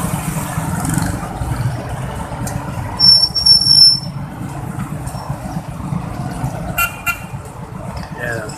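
Steady rumble of street traffic: cars, motorcycles and motorcycle tricycles. About three seconds in, a loud, shrill, high-pitched toot lasts about a second, and a short pitched beep like a horn follows near the end.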